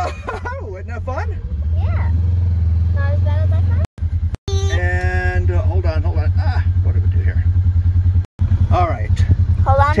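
Side-by-side UTV engine running as it is driven along, a steady low drone with voices over it. The sound cuts out briefly twice, near the middle and later on.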